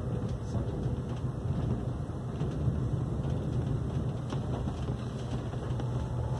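AREX 1000 series (Hyundai Rotem) electric train heard from inside the passenger cabin while travelling: a steady low rumble.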